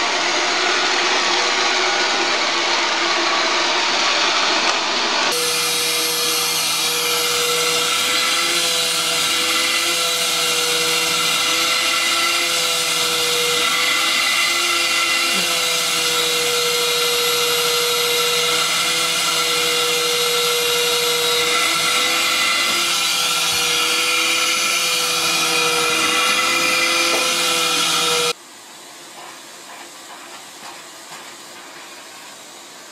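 A vacuum cleaner running with a steady whine whose pitch wavers slightly as it is run over a cat's fur. It is preceded by about five seconds of harsher, hissing motor noise and drops suddenly to a faint hiss near the end.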